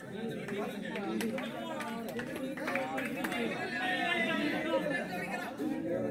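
Indistinct chatter of several voices talking over one another, with a few sharp clicks.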